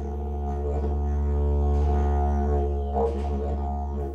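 Didgeridoo music: one steady low droning note with rich overtones, swelling slightly and then easing off.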